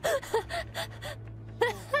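A young woman laughing hard in a run of quick bursts, with a louder burst near the end.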